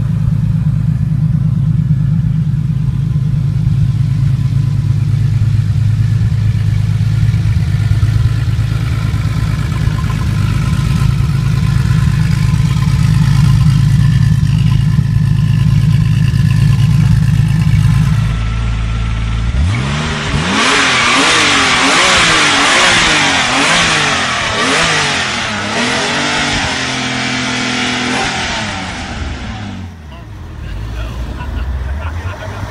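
Porsche 959 twin-turbo flat-six engine idling steadily with a low drone. About two-thirds of the way through, a second 959 takes over, revved repeatedly, its pitch rising and falling several times in quick succession.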